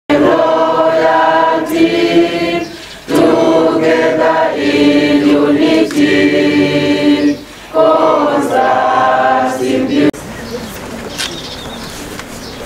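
A group of people singing together, in three phrases with short breaks between them, stopping suddenly about ten seconds in and leaving a lower background of the gathering.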